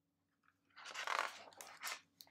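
Pages of a hardcover picture book being turned by hand: a short paper rustle about a second in, then a couple of brief crisp flicks as the page settles.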